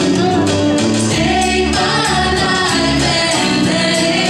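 Live church worship band music: a male lead singer with backing vocals over the band's accompaniment.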